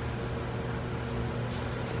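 Steady mechanical hum of coin-operated laundromat machines running, with a faint steady high tone over it.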